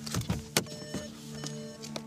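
A few sharp clicks and knocks of a Volkswagen's driver door being unlatched and pushed open as someone climbs out of the seat, over a steady music underscore.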